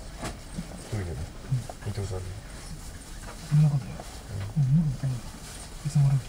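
Low-pitched, indistinct male voice talking in short broken phrases, the loudest about three and a half and five seconds in, over a steady low rumble.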